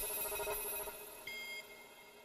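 Electronic chime of a logo sting: a bright chord struck at the start, then a second, higher note about a second and a half in, both ringing on and fading away.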